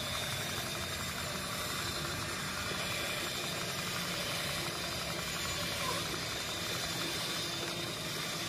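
RV slide-out room being driven outward by its mechanism: a steady mechanical hum with a faint high whine over it.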